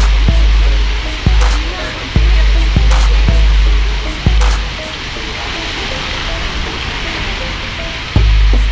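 Fountain water splashing with a steady hiss, against background music and voices. Heavy low rumbling comes and goes in sudden blocks, then drops away about five seconds in.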